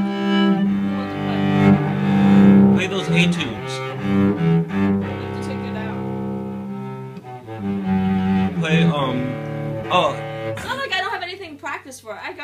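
Cello bowed in slow, sustained low notes that change pitch every second or so. The playing stops about a second before the end, and a woman's voice follows.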